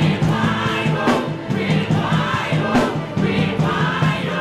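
Live gospel worship music: a congregation singing together over keyboard accompaniment, with sharp percussive hits running through it.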